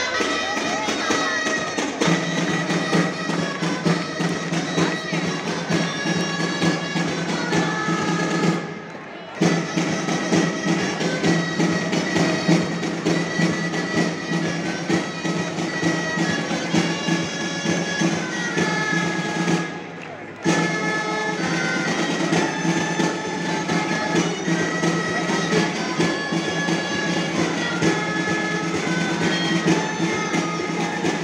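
A band of gralles (Catalan shawms) playing a reedy dance tune, with a drum keeping the beat. The music dips briefly twice, about nine seconds in and about twenty seconds in.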